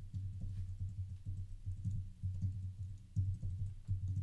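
Computer keyboard typing: a run of irregular keystrokes.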